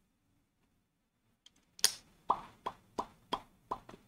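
After a second and a half of near silence, one sharp click, then a run of about six short pops at roughly three a second.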